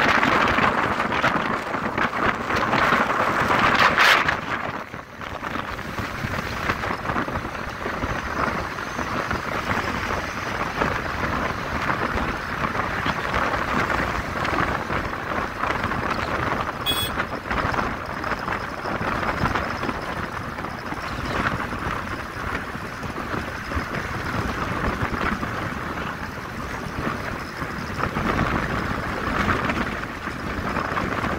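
Wind rushing over the microphone with the road and engine noise of a moving vehicle at speed. It is louder for the first four seconds, then drops to a steadier, lower rush, with a brief click about seventeen seconds in.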